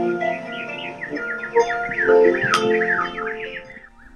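Harp playing a slow melody of plucked, ringing notes with songbirds chirping along, the birds singing a quick run of repeated chirps in the middle. The music dies away near the end.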